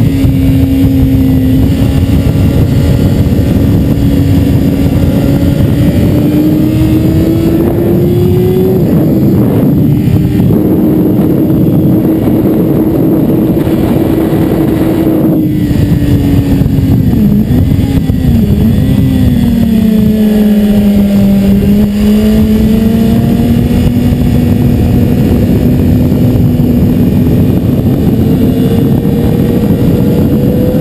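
BMW S 1000 RR's inline-four engine running hard at high speed, heard from on the bike. Its pitch holds fairly steady and rises a little, dips as the revs drop about halfway through, then climbs slowly again.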